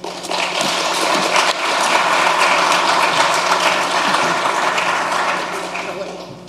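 Audience applauding, building within the first second, holding steady, then fading out near the end.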